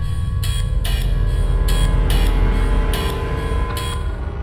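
Dark background music: a deep low drone and held tones under sharp percussive hits that come about every half second and stop just before the end.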